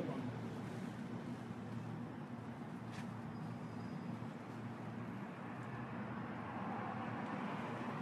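A steady low mechanical hum, with a single sharp click about three seconds in.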